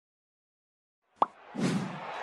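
Silence, then about a second in a sharp pop followed by a whoosh: sound effects of an animated logo intro.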